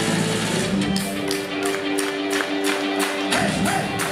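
Live rock band playing in a concert hall, heard from the crowd. About a second in, the heavy bass falls away, leaving held chord tones over a steady high ticking beat of about three ticks a second.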